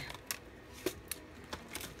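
A few light clicks and rustles of craft supplies in plastic packaging being handled on a tabletop.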